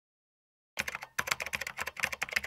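Rapid, irregular clicking of computer-keyboard typing that starts abruptly a little under a second in.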